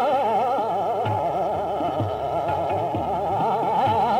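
Male Hindustani classical khayal vocal in raag Darbari, the voice shaking quickly up and down in pitch in a continuous run. Occasional low tabla strokes sound beneath it.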